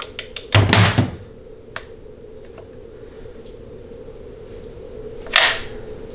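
Wrench tightening the band-adjustment lock nut on a Ford C6 transmission case to 40 ft-lb: a few quick light clicks, then a louder metallic thunk just under a second in. Another single sharp knock comes about five seconds in, over a faint steady hum.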